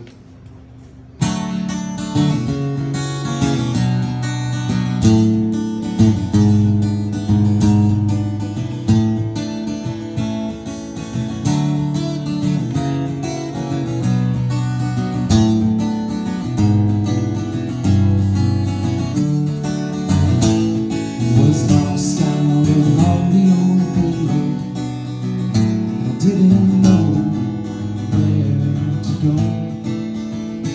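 Acoustic guitar strummed solo as the instrumental intro of a song, starting about a second in after a short pause.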